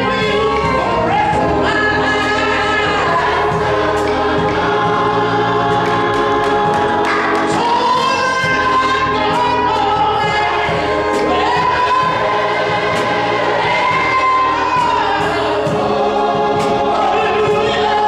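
Gospel choir and a male soloist singing with organ accompaniment, in long held notes that slide up and down.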